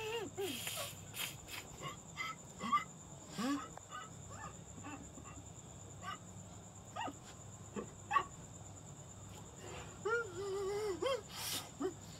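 A man whimpering and moaning in short, wavering whining cries, with gasps and sniffs in between. A longer wavering moan comes about ten seconds in.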